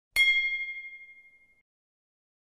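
A single bright, bell-like metallic ding, struck once just after the start and ringing out for about a second and a half.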